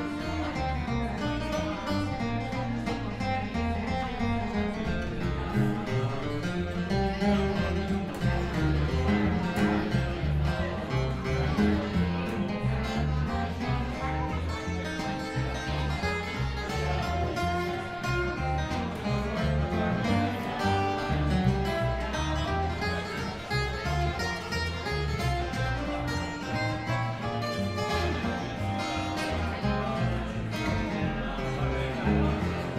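A live band playing a song led by acoustic guitar over a steady bass line.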